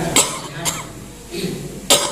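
A person coughing: two sharp coughs about a second and a half apart, with a lighter one in between.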